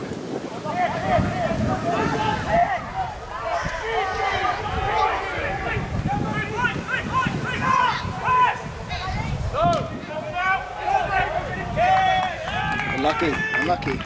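Many men shouting and calling over one another as rugby forwards maul from a lineout, with wind rumbling on the microphone.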